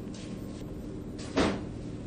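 A single short knock from handling the tablet about a second and a half in, over a steady low background hum.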